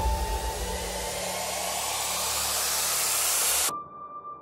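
Synthesised noise riser: a hiss that swells and brightens, then cuts off suddenly near the end, leaving a thin steady tone.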